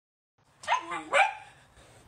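A husky giving two short vocal calls about half a second apart, each sliding up and down in pitch, as if complaining.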